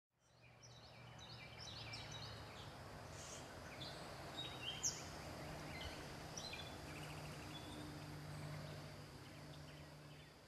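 Faint outdoor garden ambience starting after a brief silence: small birds chirping, with a quick run of short high chirps in the first few seconds and scattered ones after, over a low steady hum. A single sharp click about five seconds in.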